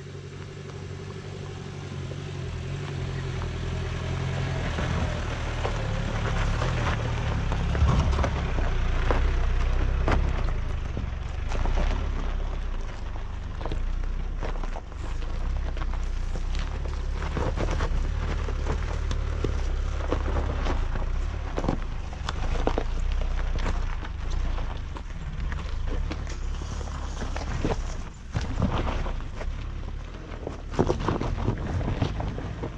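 Suzuki Jimny JB43's engine running at low revs as the vehicle crawls over a rocky dirt track, growing louder over the first eight seconds or so. Then a steady low rumble, with stones and gravel crackling and knocking under the tyres.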